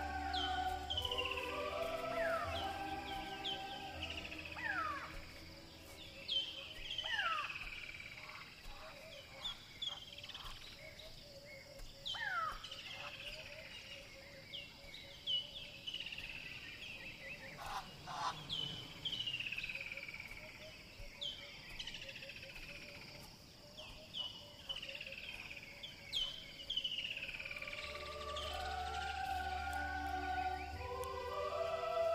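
Birds calling: many repeated down-slurred whistles, with a steady pulsing trill underneath. Background music with a deep bass plays for the first few seconds and returns near the end.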